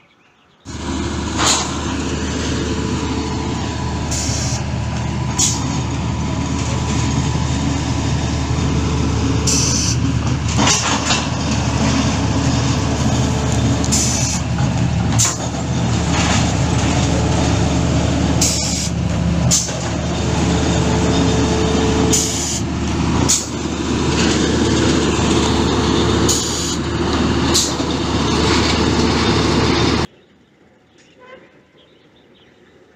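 Heavy pile-boring rig machinery running: a steady engine or winch hum with irregular sharp clanks and short hisses every few seconds.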